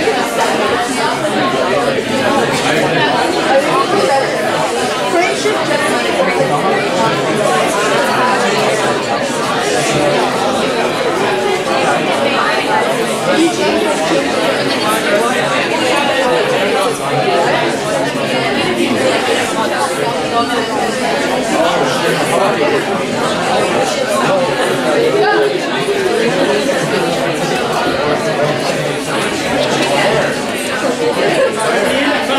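Many students talking at once in a lecture hall: a steady babble of overlapping voices with no single speaker standing out.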